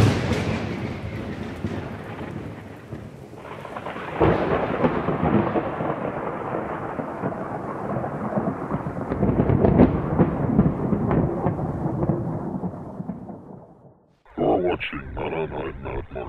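A sudden thunderclap followed by long rolling thunder that swells again about four and ten seconds in, then fades away. Near the end a processed, synthetic-sounding voice begins.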